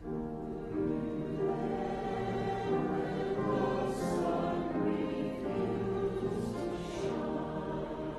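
Church choir singing a slow hymn with instrumental accompaniment, the voices coming in at the start and holding steady.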